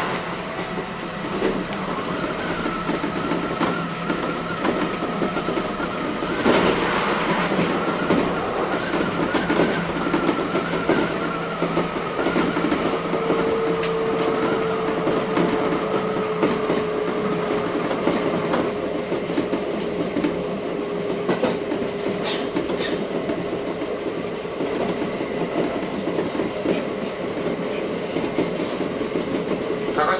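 Kintetsu electric train running at speed, heard from inside the front cab: steady rolling noise of the wheels on the rails with quick clicks over the rail joints, and a steady whine that comes in about halfway through.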